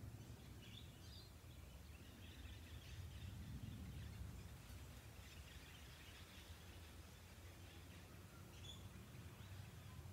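Near silence: a faint low outdoor background rumble, with distant birds chirping faintly a few times.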